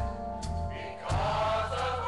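Church choir singing a slow gospel worship song with instrumental accompaniment; the choir's held notes swell in strongly about a second in.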